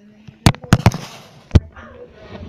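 Handling noise from a handheld phone camera: a quick run of sharp knocks and bumps against the microphone as it is moved against hands and clothing, with one more loud knock about a second and a half in.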